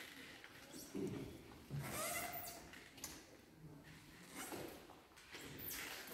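A quiet lull in a stone church between chants: faint, scattered sounds, a few of them short voice-like notes.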